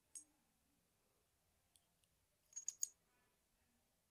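A few small, sharp metallic clicks against near silence, one just after the start and a quick cluster about two and a half seconds in: a plug follower being pushed through a pin-tumbler lock cylinder to slide the plug out.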